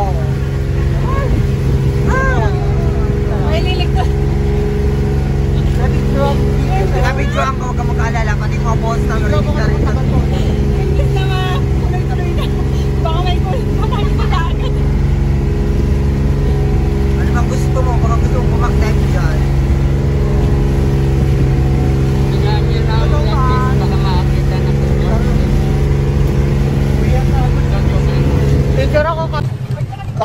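An engine running steadily at an unchanging pitch, with people's voices talking over it; it cuts off suddenly near the end.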